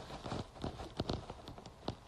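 A few soft, irregular clicks and taps, likely handling noise on the microphone of a hand-held phone, with two sharper ones about a second in and one near the end.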